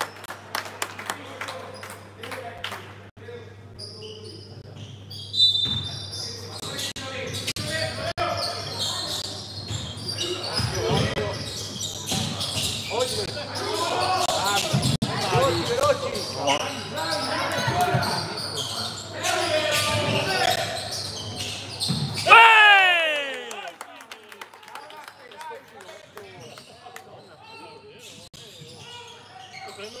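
Basketball bouncing on a hardwood gym floor during a youth game, with players and spectators calling out in a large, echoing hall. About three quarters of the way through comes the loudest sound, one that sweeps steeply down in pitch.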